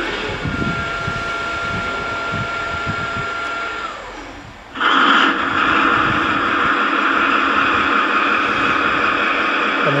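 A Gauge 1 model Class 66 diesel locomotive's onboard sound unit playing its engine start sequence. A steady whine runs for a few seconds and fades, then about five seconds in the diesel engine sound starts suddenly and settles into a steady idle.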